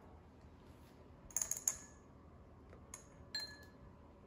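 A few light clinks with brief ringing, a cluster about a second and a half in and two more near three seconds: hops dropping into a ceramic pouring bowl on a kitchen scale.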